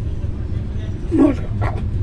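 Steady low rumble of a moving passenger train heard inside the carriage. About a second in there is a short, high vocal sound, then a fainter one.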